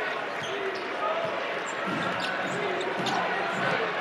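Arena crowd murmuring, with a basketball being dribbled on a hardwood court.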